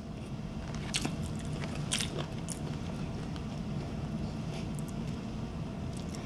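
A person chewing a mouthful of burger close to the microphone, with a few soft wet mouth clicks over a low steady hum.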